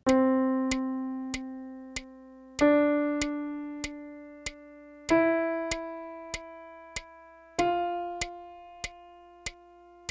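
Piano playing a slow rising sequence of whole notes, C, D, E and F, each struck once and held for four beats as it fades. A metronome click ticks on every beat, four clicks to each note.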